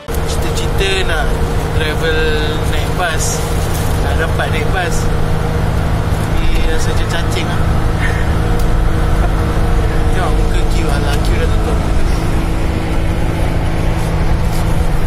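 Steady low rumble of a minibus travelling at speed on a highway, heard from inside the passenger cabin, with a man talking over it.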